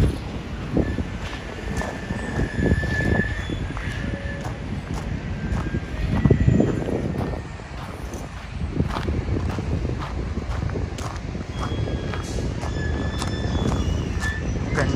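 Footsteps walking on a beach of crushed dolomite sand, with a low, uneven rumble of wind on the microphone.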